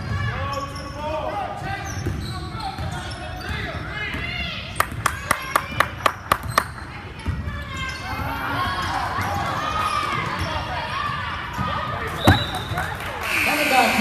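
Spectators chattering in a gym while a basketball is dribbled on the hardwood court: about eight quick bounces, three or four a second, in the middle, and one louder thud near the end.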